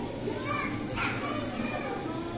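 A hubbub of children playing and calling out in a large play hall, with one high child's call rising sharply about a second in over a steady low hum.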